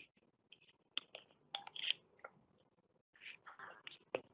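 Faint, irregular clicks and crackles of a plastic water bottle being handled and capped after a drink, with soft breathy noises near the end.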